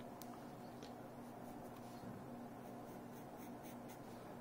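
Faint graphite pencil scratching on sketch-pad paper in a few short, scattered strokes, over a steady low room hum.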